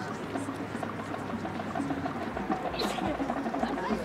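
Crowd in the stands murmuring and chatting, many voices blended at a low, even level.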